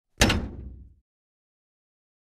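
A single sharp hit from a logo-animation sound effect, loud at its onset and dying away within about a second.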